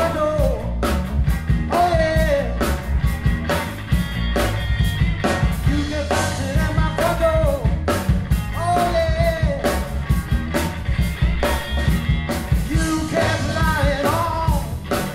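Live blues band: a male lead vocal singing over electric guitar, bass and drum kit, with the drums keeping a steady beat.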